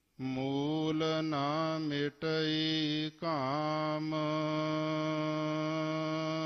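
A man's voice chanting Gurbani in the slow, drawn-out melodic style of a Hukamnama recitation. He holds long steady notes, dips in pitch twice, and breaks off briefly twice, about two and three seconds in.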